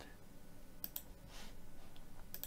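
Two quick, faint clicks of a computer mouse button just before a second in, followed by a soft, brief rustle.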